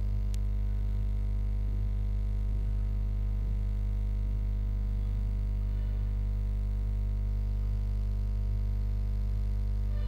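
Steady electrical hum with a stack of evenly spaced overtones, unchanging throughout; one faint click just after the start.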